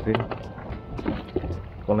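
Water lapping against a small boat's hull, with a few light knocks.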